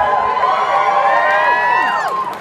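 Concert audience cheering and whooping, many voices shouting at once with rising and falling whoops, dying away near the end.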